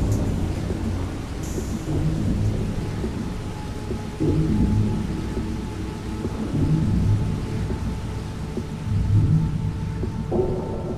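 Ambient electronic music built from sampled field sounds: deep, rumbling low swells that rise and fall every few seconds, with a faint steady high tone entering around the middle.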